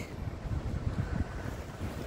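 Wind buffeting a phone's microphone: an uneven low rumble with faint hiss.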